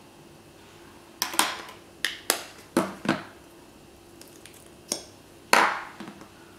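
Hard makeup cases and compacts clacking against each other and against a surface as they are handled and set down: about eight sharp clacks in loose pairs, the loudest near the end.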